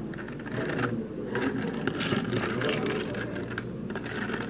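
A long bar spoon stirring ice in a tall cup of sparkling blueberry ade, the cubes clinking and rattling in quick runs of small clicks, over a steady low background hum.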